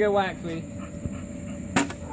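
A plastic bat hitting a hanging cardboard piñata once, a single short knock near the end.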